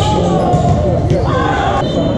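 Players and spectators talking and calling out, their voices echoing in a large gymnasium during an indoor volleyball rally. A sharp hit of the volleyball comes at the start and another near the end, with a brief high squeak between them.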